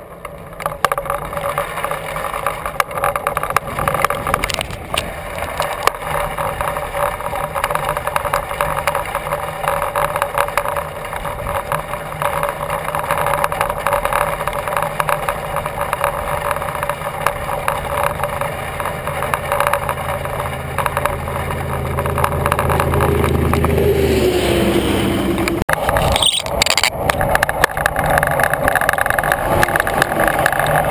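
Wind and tyre noise from a touring bicycle rolling along a paved highway, with the handlebar-mounted camera rattling faintly. In the last several seconds a motor vehicle comes up from behind and overtakes: its engine and tyre noise builds, then drops in pitch as it goes by.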